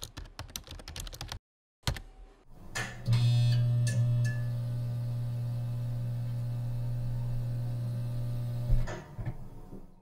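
Rapid computer-keyboard typing, a quick run of key clicks for about a second and a half and then a single click. From about three seconds in, a steady low hum holds for some six seconds and ends with a short thump.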